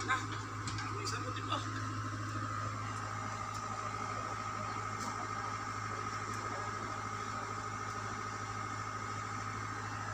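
Mini excavator's engine running steadily at a constant speed, a low hum with a thin steady whine above it.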